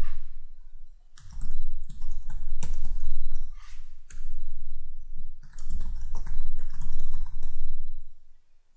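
Typing on a computer keyboard: irregular runs of keystrokes with pauses between them, each key a click over a dull thud.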